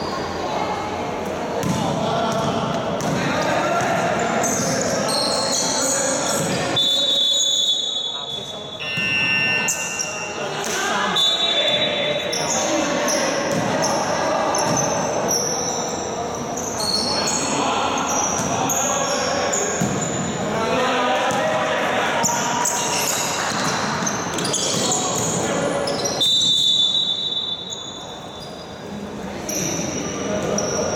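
Basketball game in a large echoing gym: a ball bouncing on the wooden court, sneakers squeaking, and players' shouts and voices throughout.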